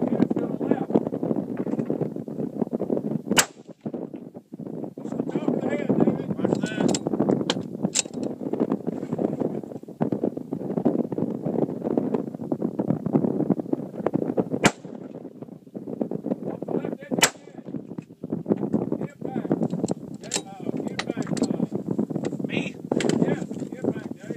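Precision rifle shots, three sharp cracks: one a few seconds in, then two more about two and a half seconds apart later on. The shots sound over a steady rumble of wind on the microphone.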